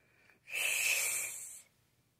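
A woman hissing forcefully through bared teeth: one breathy hiss of a little over a second, starting about half a second in.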